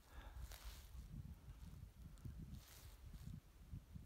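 Near silence: faint outdoor quiet with soft, irregular low rumbles.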